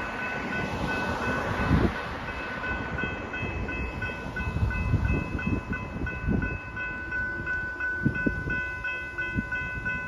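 A railway level crossing's electronic warning bell rings in rapid, even strokes as the crossing activates. Cars drive over the crossing beneath it, their tyre and engine noise swelling as each one passes.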